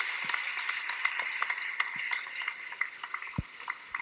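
Audience applauding: a dense patter of many hands clapping that gets quieter toward the end.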